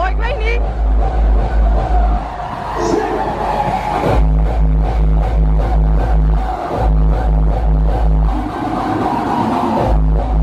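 Loud electronic dance music from a festival stage's sound system, heard from backstage: a heavy bass and kick-drum beat about three times a second. The bass drops out for about two seconds a little after two seconds in, and again near the end.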